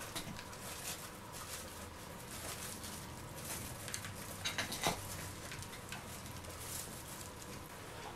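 Hands rubbing and pressing damp plaster cloth on a sculpture's surface: faint, soft brushing and scuffing, with a few louder scuffs close together about four and a half seconds in.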